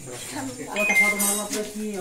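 Indistinct voices talking in the background, with a light clink.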